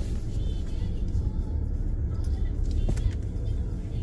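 Steady low rumble of a car driving on the road.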